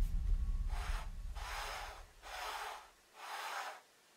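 Wooden block sliding along the slot between plywood rails, four short scraping strokes of wood rubbing on wood, about half a second each.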